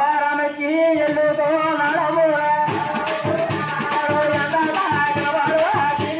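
A man singing a long, wavering folk melody alone; about two and a half seconds in, drums and jingling percussion come in with a steady beat of about three strokes a second while the singing goes on.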